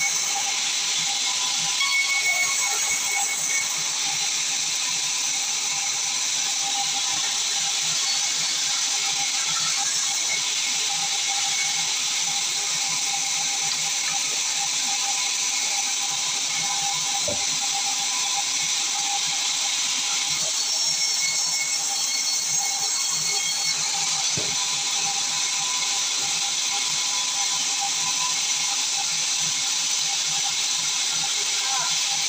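Sawmill band saw running steadily while cutting timber: a constant hiss from the blade in the wood with a steady high whine over it.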